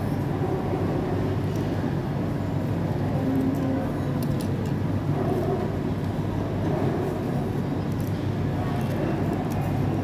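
Steady food-court background din: a low hum with indistinct chatter from other diners and a few faint clicks of tableware.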